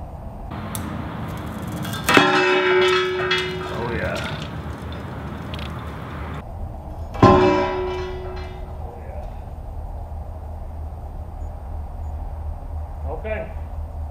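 Two loud metallic clangs about five seconds apart, each ringing on briefly like a struck bell, as the electrically burnt rope gives way on a steel hook-and-weight test rig.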